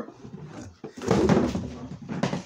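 Cardboard shipping box being handled and set aside: a rustling scrape lasting about a second, starting near the middle.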